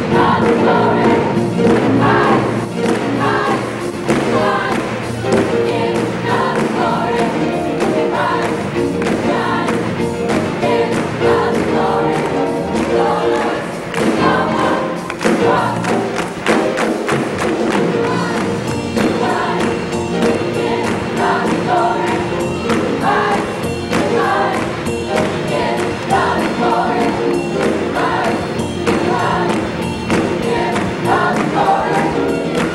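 Gospel choir singing with a band, drums keeping a steady beat.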